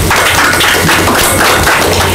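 Applause: a room of people clapping.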